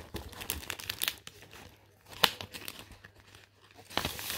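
Sheets of patterned scrapbook paper being handled and shuffled: soft rustling and crinkling of paper, with a couple of sharper clicks.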